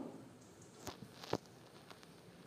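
Thick dry-fish thokku simmering in a pan, with a few soft pops of bursting bubbles about a second in over a faint hiss.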